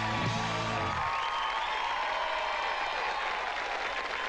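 A live rock band's final held chord rings out and cuts off about a second in, and a studio audience applauds and cheers.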